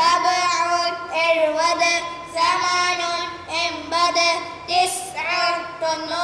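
A child's voice singing a lesson song that recites Arabic number names, in short held phrases with brief breaths between them.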